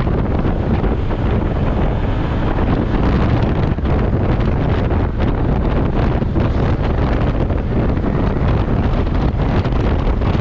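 Wind buffeting a camera microphone on a moving motorcycle: a steady, dense rushing noise heaviest in the low range, with the bike's running and road noise underneath.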